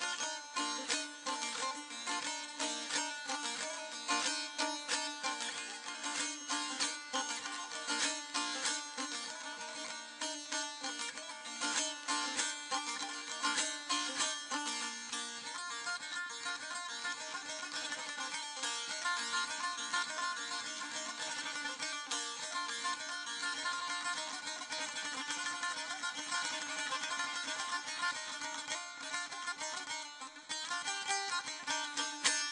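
Ashiq saz played solo: a fast, continuous plucked-string instrumental passage over a steady drone.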